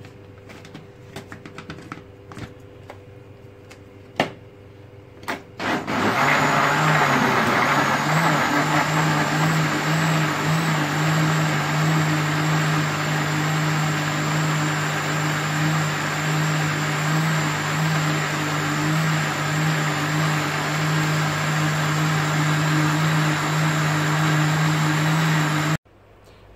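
A few light clicks and knocks, then about six seconds in a countertop electric blender motor starts and runs loud and steady for about twenty seconds, blending bananas and nuts into a milkshake. It cuts off suddenly near the end.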